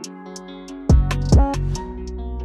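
Drill rap instrumental at 140 BPM: a sad piano melody over regular hi-hat ticks, with deep 808 bass hits coming in about a second in.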